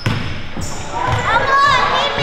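Basketball bouncing on a hardwood gym floor, a thump about twice a second. In the second half come high, bending squeaks like sneakers on the court, with players' voices in a large echoing gym.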